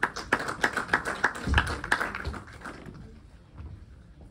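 Scattered hand clapping from a small audience, several claps a second, dying away about three seconds in. A single low thump comes near the middle.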